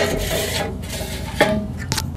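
A short scraping rub of a grill part being slid into place inside a ceramic kamado grill, loudest in the first half-second and then fading.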